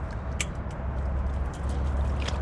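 Wire-mesh muskrat colony trap clinking and rattling as muskrats are worked out of it by hand, a few sharp metal clicks, the loudest about half a second in, over a low steady rumble.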